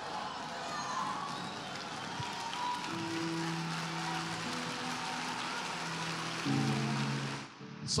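Audience applauding and cheering, with held low musical notes coming in about three seconds in. The applause dies away shortly before the end.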